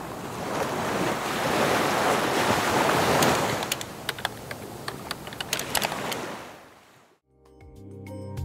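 Ocean surf that swells and then fades away, with a quick run of keyboard-typing clicks in the middle. Near the end, music with pitched mallet-like notes starts.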